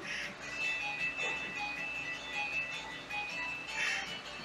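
Video game music playing from a TV: a melody of held high tones, with brief noisy bursts at the start and near the end.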